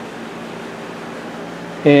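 Steady background hum and hiss, with a low steady tone under it, in the pause before a man's voice resumes near the end.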